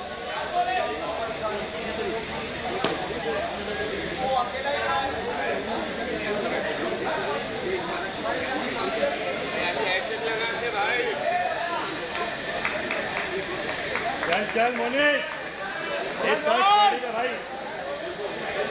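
Several players' voices talking and calling over one another, no one voice clear, with a light hiss of background noise. Louder calls and shouts come near the end.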